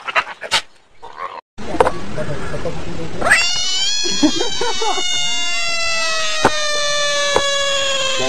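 A bullfrog held in a hand lets out a long, wailing distress scream. It starts about three seconds in with a quick rise and then slides slowly down in pitch without a break, with a couple of sharp clicks over it. Before it come a few short animal cries and a stretch of rushing noise.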